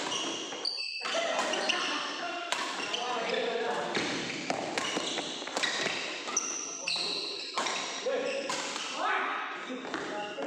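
Badminton rally: rackets striking the shuttlecock in sharp cracks every second or so, with shoes squeaking on the court floor and players' voices.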